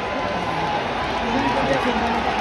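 Large stadium crowd of spectators, many voices talking and calling out at once in a steady, dense hubbub.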